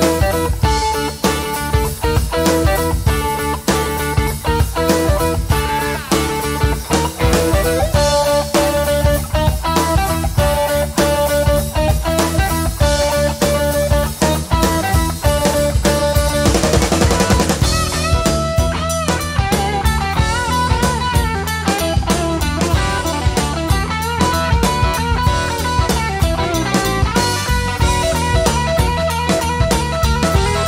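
Live blues-rock band playing an instrumental passage: an electric guitar lead with sustained and bent notes over bass and a drum kit. About halfway through, a brief sweeping, swirling sound passes through the guitar.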